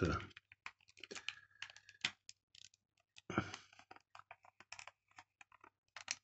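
Small scattered clicks and rustles of a 35mm film cassette, its film and a take-up spool being handled and fitted into a FED 2 rangefinder camera body.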